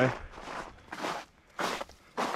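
Footsteps crunching on a snow-covered trail: three steps, about two-thirds of a second apart.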